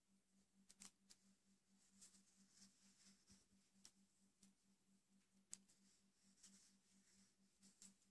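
Near silence: faint, scattered clicks and rustles of metal circular knitting needles and wool yarn as knit stitches are worked, over a faint steady low hum.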